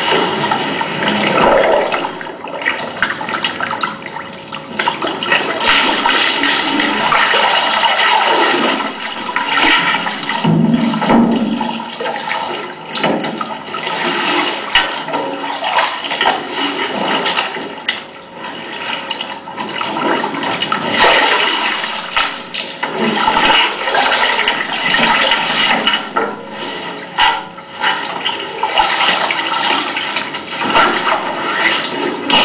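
Water splashing and sloshing irregularly in a metal drum as a person moves in it and reaches into the water, loud throughout. It is heard from a film soundtrack playing over a screening room's speakers.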